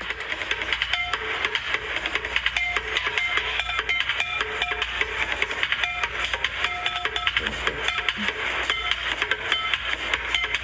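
Street bucket drumming: fast, steady drumstick strikes on upturned plastic buckets and crates, with short pitched rings among the hits.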